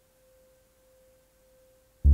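Near silence, with one faint steady pure tone a little above 500 Hz leaking from the Synton Fenix 2 modular synthesizer.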